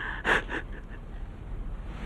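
A single short intake of breath about a quarter second in, then quiet room tone with a low steady hum.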